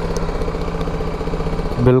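BMW G 310 GS single-cylinder motorcycle engine running steadily at low revs, with an even, fast pulse.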